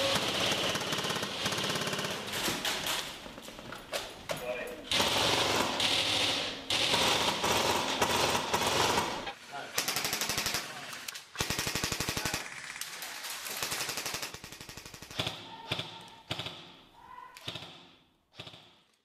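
Airsoft electric guns firing in rapid full-auto bursts, strings of fast clicks broken by short pauses, with players' voices, thinning out and fading near the end.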